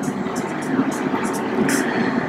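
Marker pen writing on a whiteboard: a quick series of short, scratchy strokes over a steady background noise.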